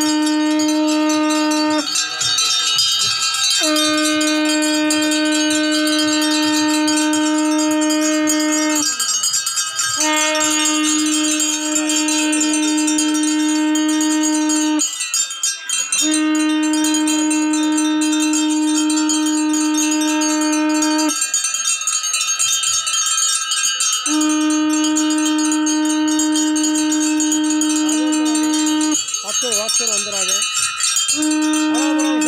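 Hanging brass temple bells rung continuously by several people, with a conch shell blown over them in long steady blasts of about five seconds each, five in all, separated by short breaks.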